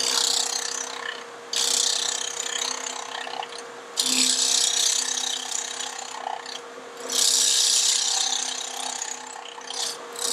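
A bowl gouge cutting a spinning wood block on a lathe, facing off its sawn side: four cutting passes, each starting abruptly and fading over a second or two, over the steady hum of the lathe.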